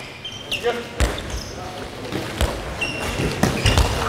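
A handball thudding on a wooden sports-hall floor, in irregular thuds starting about a second in, with a few short, high shoe squeaks, echoing in the large hall.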